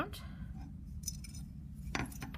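Light handling clicks as a needle and yarn are worked through a clay weaving loom, with one sharper click near the end, over a low steady background hum.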